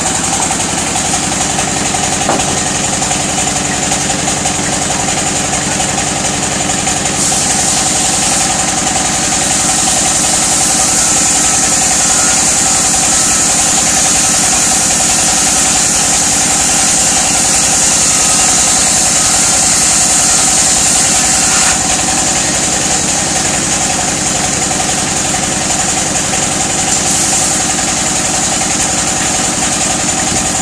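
A belt-driven band saw, powered by a stationary engine with a flywheel, running steadily. From about 7 s to 22 s a plank is fed through the blade, adding a louder, hissing cutting sound.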